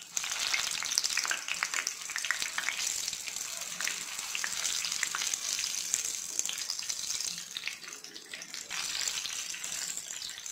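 Batter-coated green chillies (mirchi bajji) deep-frying in hot oil: a steady, dense sizzle full of fine crackles. It starts suddenly, eases slightly about eight seconds in, then picks up again.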